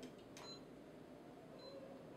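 Near silence: a faint click from the power button of a Teseq NSG438 ESD simulator base station being pressed, followed by two brief, faint high beeps as the unit switches on.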